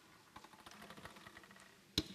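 Faint rustling of paper and small clicks close to a podium microphone, with one sharp click near the end.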